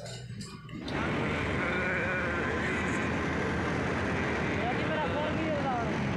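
Steady traffic and road noise from riding in a moving vehicle, starting suddenly about a second in, with faint voices mixed in.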